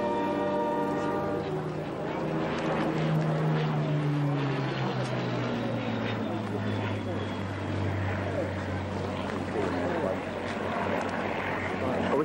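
Propeller aircraft flying low overhead, its engine drone falling steadily in pitch as it passes.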